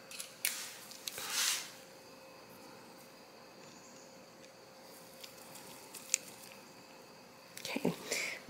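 Faint small-tool handling on a sewing machine: two brief rustling scrapes in the first two seconds, then a few small sharp metal clicks. This is a screwdriver bit being changed and a screw being worked into the needle bar.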